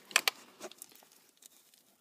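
Handling noise as a small work light is moved and set down against the footwell carpet: a couple of sharp clicks and rustles near the start, then a few fainter ticks.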